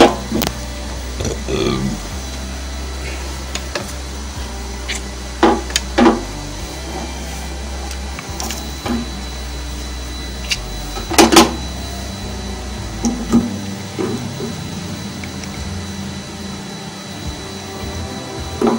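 Washing-machine shock absorber and its plastic mount being handled against the sheet-metal cabinet: a few scattered knocks and clatters, the loudest a double knock about 11 seconds in, over a steady low hum that stops about 13 seconds in.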